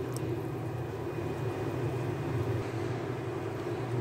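Steady low hum and hiss of a stove heating a steel pot of water, with small bubbles forming on the bottom before the boil.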